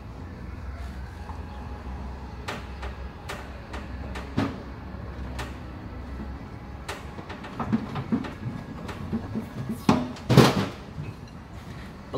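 Metal clicks and knocks as a pressure-washer pump and its reduction gearbox are worked onto a Honda GX390 engine's drive shaft, with a louder knock about four seconds in and the loudest clunk about ten seconds in. A steady low hum runs underneath.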